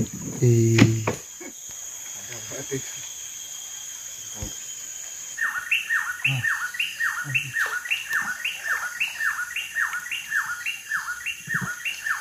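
A bird calls a rapid, evenly spaced run of descending whistled notes, about two a second, starting about five seconds in and keeping on. Under it is a steady high insect drone.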